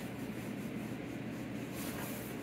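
Hand rubbing and pressing the padded fabric side of a speaker tote bag, a faint, steady rustle.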